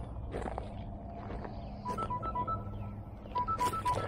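Electronic alarm beeping: short beeps alternating between two pitches, coming in two quick groups about two seconds and three and a half seconds in. It is the gardener's reminder alarm for shutting off the irrigation.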